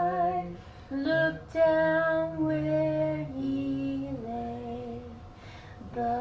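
A woman's voice singing a slow song unaccompanied, holding each note long and moving in steps from note to note, with short pauses between phrases.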